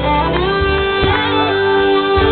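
Live rock band playing loudly, with a saxophone carrying held notes that bend in pitch over guitars and drums.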